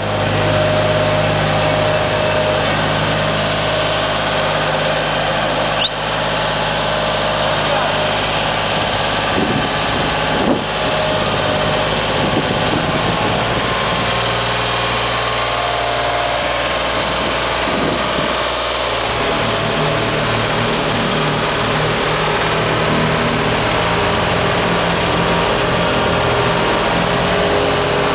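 Ingersoll Rand DD-32 tandem-drum roller's engine running steadily as the roller drives slowly, with one short knock about ten seconds in.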